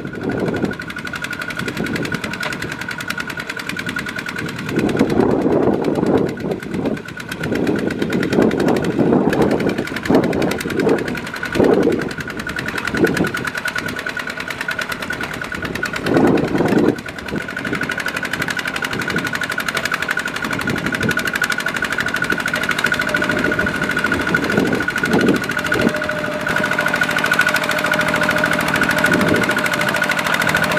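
A two-wheel walking tractor's single-cylinder diesel engine running under load as it hauls a loaded trailer through deep mud. It gets louder in several surges during the first half, then settles into a steady chug.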